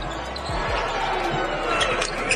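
A basketball being dribbled on a hardwood court during live play, giving irregular short bounces over the steady noise of the arena.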